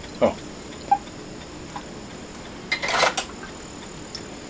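Brief clatter of kitchen utensils at a sink about three seconds in, after a single small clink about a second in, over quiet kitchen room tone.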